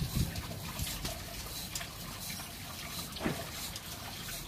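Steady hiss of salt brine being drawn through a resin water-softener filter tank and its plumbing during regeneration, with one short knock a little after three seconds.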